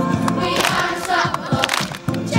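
Children's choir singing together over backing music.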